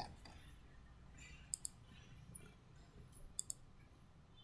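Computer mouse button clicking: two quick double-clicks about two seconds apart.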